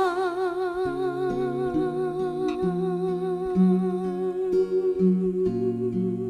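Music: one long held vocal note with a steady vibrato over picked acoustic guitar notes.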